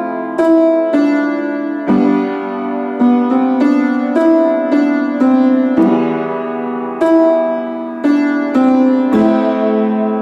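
Piano being played: a slow line of notes and chords, each struck note ringing and fading before the next, about one or two a second.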